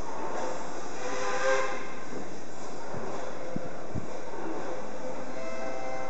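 Historic 81-71 metro train approaching through the tunnel into the underground station: a steady rumble with the station's echo, and a brief cluster of tones about a second and a half in.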